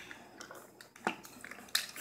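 A few light clicks and taps from a plastic RC monster truck being handled, the sharpest about a second in and another near the end.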